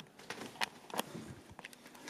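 Footsteps and handling noise from someone walking with a hand-held camera: a few soft clicks and knocks over a faint hiss.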